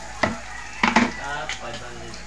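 Chopped onion and garlic sizzling in oil in an aluminium pot at the start of a sauté, with a few sharp taps of a spatula against the metal.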